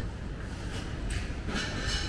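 Steady low rumble of indoor shopping-centre background noise.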